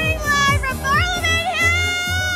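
A high-pitched woman's voice singing in long, arching, held notes over loud dance music with a fast, steady kick-drum beat.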